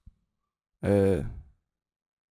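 A man's short wordless vocal sound, falling in pitch, lasting about half a second, about a second in; silent otherwise.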